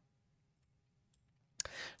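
Near silence, then about a second and a half in a single sharp click followed by a short breath just before speech resumes.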